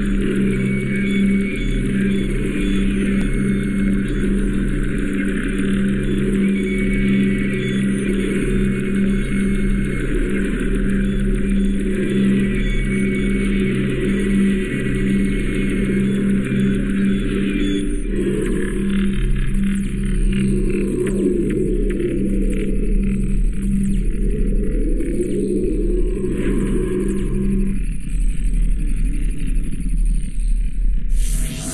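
Electronic title-sequence soundtrack: a steady, low, pulsing synthesized drone that changes character about eighteen seconds in.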